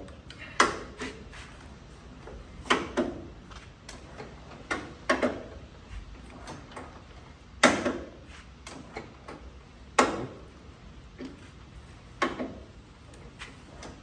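1922 Mack AB engine being turned over slowly by hand crank, with a sharp metallic click about every two and a half seconds and fainter ticks between. The impulse magneto is only just barely starting to kick.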